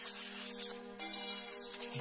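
Handheld plasma cutter hissing as it cuts a circle in thin sheet steel, stopping a little before halfway, over steady background music.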